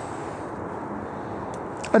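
Steady low rushing background noise with no distinct events, ending as a man starts to speak right at the close.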